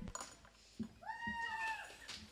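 A faint single high-pitched whoop of about a second, its pitch rising then falling, from a listener in the quiet room just after the song stops, preceded by a small knock.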